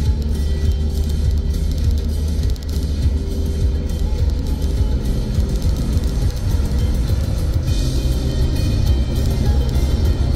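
Background music with held notes, over a steady low rumble of road noise heard from inside a moving car.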